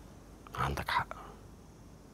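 A man's brief, breathy whispered utterance about half a second in, over low room tone.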